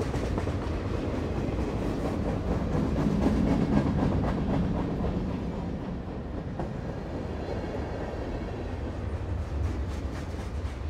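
Passenger train running, heard from inside the carriage: a steady rumble of wheels on the track that grows a little louder a few seconds in, then eases.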